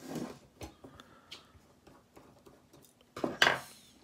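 Small metallic clicks and ticks of a screwdriver and loose screws against a 3.5-inch hard drive's circuit board, then a louder scraping clatter about three seconds in.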